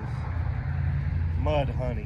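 A steady low rumble, with a short voice sounding twice about one and a half seconds in.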